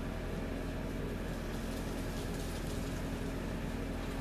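Steady low hum under a constant hiss, unchanging throughout.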